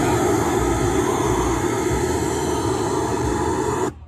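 A loud, steady rushing noise, even across high and low pitches, that cuts off suddenly near the end.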